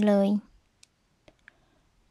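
Three faint, short clicks from a metal crochet hook working a slip stitch through yarn, after the last word of speech.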